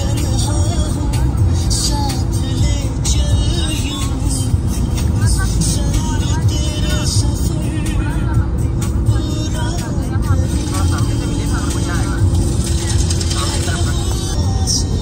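Steady low road and engine rumble inside a Maruti Suzuki S-Cross cruising at highway speed, with music playing over it.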